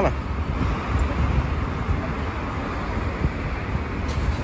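Outdoor background noise: a steady low rumble of wind on the microphone over the hum of road traffic.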